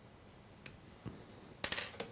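Small metal clicks and taps of fly-tying tools, hackle pliers and scissors, being let go and set down: a couple of faint ticks, then a quick cluster of sharper clicks near the end.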